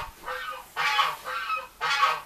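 Poultry calling close by: a run of about four short calls at a steady pitch, roughly half a second apart.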